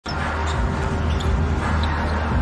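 Basketball being dribbled on a hardwood court, over steady arena noise and music.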